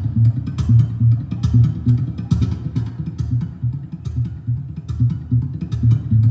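Mayson MS3 OCE2 acoustic-electric guitar played fingerstyle, with a repeating low bass line under plucked melody notes and sharp percussive accents, heard through the stage sound system.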